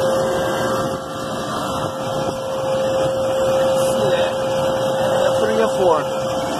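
Steady machinery hum of running refrigeration equipment: an even whir with one constant tone held throughout. A brief voice is heard near the end.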